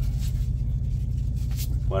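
Semi truck's diesel engine idling with a steady low hum, heard inside the cab.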